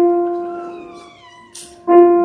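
Piano note struck and left to fade, then struck again at the same pitch near the end.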